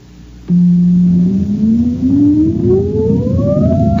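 Rising electronic tone of a radio sound effect for a rocket launch. It comes in loud and low about half a second in, holds for a moment, then glides steadily upward over a low rumble, building toward the blast-off countdown.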